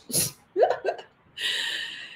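A woman laughing: a quick intake, a few short, choppy laugh syllables, then a breathy, hissing exhale near the end.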